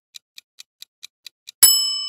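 Clock-ticking countdown sound effect, about four to five ticks a second, cut off about one and a half seconds in by a bright bell ding that rings on: the quiz timer running out.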